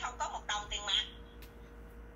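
Speech heard through a phone line for about a second, then a pause with only a faint steady hum.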